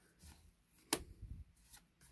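Magic: The Gathering trading cards being handled by hand: one sharp snap of a card against the stack a little under a second in, a lighter click near the end, and soft sliding between them.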